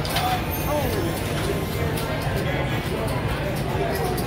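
Casino floor ambience: background voices chattering over a steady low hum, with faint music.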